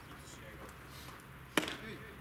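A pitched baseball smacking into the catcher's leather mitt about one and a half seconds in: a single sharp pop with a short ring after it.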